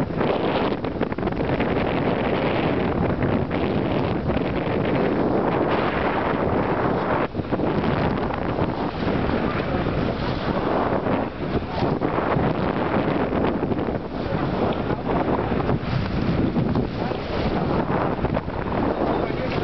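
Steady wind noise buffeting the microphone over the rush of sea water along the bow of a moving catamaran.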